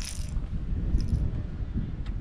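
Uneven low rumble of wind buffeting the microphone outdoors, with two brief high rustling hisses, one at the start and one about a second in.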